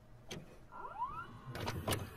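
Videocassette recorder mechanism going into play: a few clicks and clunks, with a short rising motor whine about a second in.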